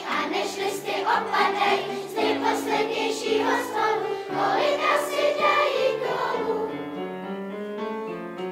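Children's choir singing with piano accompaniment. The voices thin out after about six seconds, leaving mostly held piano chords near the end.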